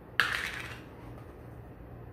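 A single short clatter about a quarter second in, fading within about half a second, as of a hard object being knocked or set down.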